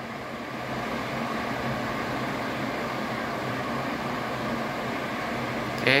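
Modena AX 0921 BABK purifier cooker hood's twin extractor fan motors running on speed 2: a steady rush of air with a low hum. It grows a little louder over the first second as the fan comes up to speed.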